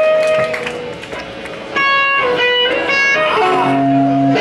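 Electric guitars played live through amplifiers: single ringing notes held about half a second each, in short groups with a brief lull about a second in, and lower notes joining near the end.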